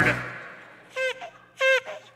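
Two short pitched honks about half a second apart, like a squeeze bicycle horn, made live by a radio sound-effects man.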